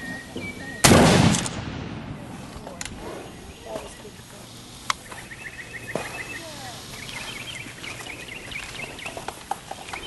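A single handgun shot about a second in, sharp and loud, with a short echo trailing off. A gun with a cocked hammer fired up into the air.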